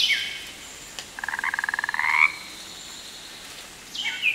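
A frog croaking once: a rapid rattling call about a second long that rises slightly in pitch at its end. A short bird chirp dies away just before it.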